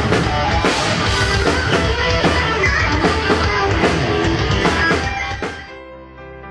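Rock cover band playing live, with a pounding drum kit and distorted electric guitar. The band music drops away shortly before the end, as a quieter, softer piece of music begins.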